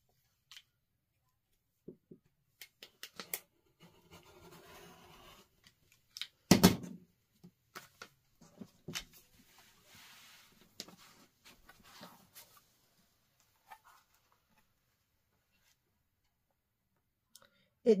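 Rotary cutter run along a ruler, trimming through the layers of a quilted quilt to cut a scalloped border, heard as soft scraping strokes among clicks and rustles of the ruler, paper template and fabric on a cutting mat. One louder knock about six and a half seconds in.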